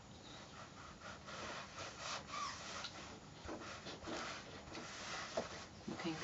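Small craft iron sliding back and forth over cotton patchwork on a padded pressing board: faint, irregular rubbing and fabric rustling, with a soft knock near the end as the iron is stood on its heel.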